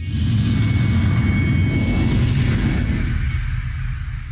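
Animated logo intro sound of a GCF LearnFree video: a sudden loud, low rumble with a hiss above it, which fades away over the last second or so.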